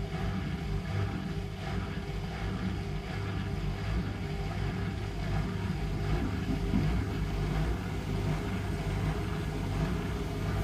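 Hotpoint NSWR843C washing machine running in its final spin cycle: a steady low rumble of the motor and the drum turning with wet laundry, growing slightly louder about six seconds in.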